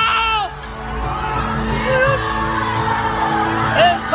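Live concert music over the PA, with a heavy bass that has just come in, while the crowd screams and cheers. Loud, high screams from fans close by come at the start and again near the end.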